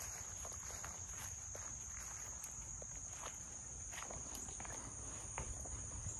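Steady high-pitched insect chorus, with scattered footsteps on a wooden porch deck.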